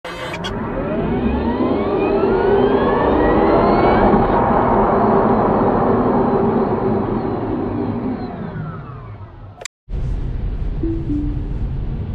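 An intro sting of sweeping pitch glides that rise and then fall, swelling up and fading away over about nine seconds. It cuts off abruptly, and after a moment's silence steady road and tyre noise of a Tesla Model 3 at motorway speed is heard from inside the cabin.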